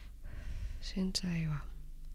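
Speech: a short spoken phrase in Thai, over a steady low hum.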